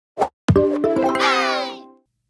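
A short intro sound sting: a single pop, then a bright musical chord with a quick flurry of clicks and a descending glide, fading out.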